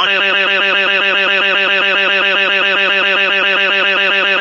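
Synthesized cartoon voice crying: one long, loud 'waaah' held at a steady pitch with a fast, even wavering pulse.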